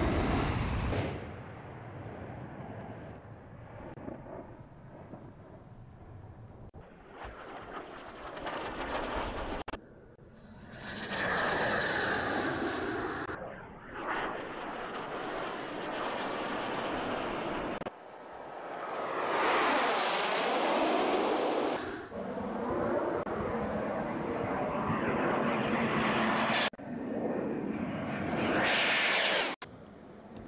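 A launch blast fading out, then a cruise missile's jet engine flying past in a series of cut-together passes. Its whine swells and rises in pitch several times, loudest near the middle and again near the end.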